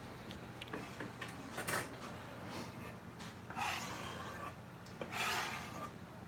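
A knife scraping across a wooden cutting board as cut ribs are pushed off onto a plate, three short scrapes among light knocks and clicks of handling.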